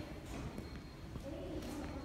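Footsteps on a hard tiled floor, with faint voices in the background.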